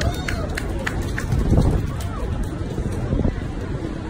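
Indistinct voices and background chatter over a steady low rumble of an outdoor public space, with several sharp light clicks and knocks scattered through it.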